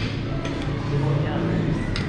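Background music and indistinct voices in a restaurant, with a sharp clink of cutlery on a dish at the start and another near the end.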